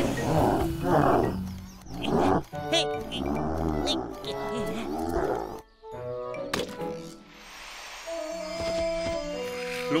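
Cartoon tyrannosaurus roaring, several loud, rough roars over the first half or so, against background music. After a short break, the music carries on alone.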